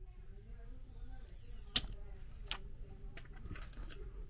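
Protective plastic film being peeled off the rear touchscreen of a DJI Osmo Action camera: faint handling and crackling, with a sharp click a little before the middle and a couple of lighter ticks after it.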